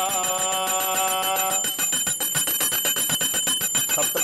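A bell rung rapidly and continuously, its strokes coming very fast with a steady high ring. A voice holds a chanted note for about the first second and a half, then stops.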